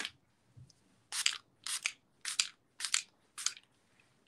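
Finger-pump spray bottle misting, five short spritzes about half a second apart.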